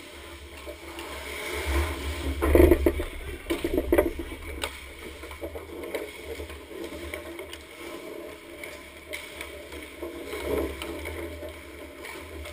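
Ice hockey play heard from a camera on the goal: skate blades scraping the ice, with sticks and bodies knocking against the net and each other. The knocks and rumble are heaviest from about two to four seconds in, then come more sparsely.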